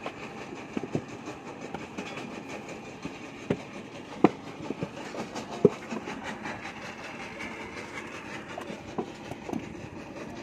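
Scattered knocks and slaps of wet clay and a wooden brick mould being worked by hand, two of them louder about four and five and a half seconds in, over a steady background rumble.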